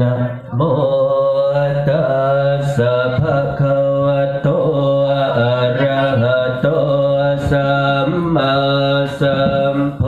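Buddhist chanting: a group of voices chanting steadily in unison on a low, level pitch, starting about half a second in, with a brief break near the end.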